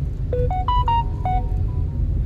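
A short melody of about eight clear electronic notes, stepping up and then back down, like a phone's ringtone or notification jingle. It plays over the steady low rumble of a car cabin.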